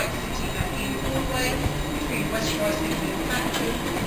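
London Underground train moving slowly along a far platform, a steady running noise of wheels on rail with no sharp clanks.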